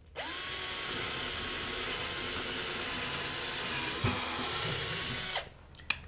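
Cordless drill boring a hole in a wooden board with a twist bit: the motor spins up quickly to a steady whine, sags slightly in pitch with a short knock about four seconds in, and stops after a little over five seconds.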